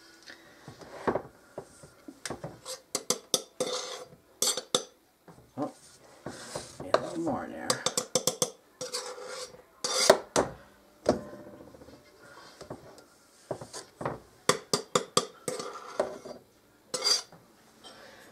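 A measuring cup and a knife clinking and scraping against a flour canister and a stainless steel mixing bowl as flour is scooped, levelled and tipped in. Many short, sharp clinks and scrapes come in irregular clusters.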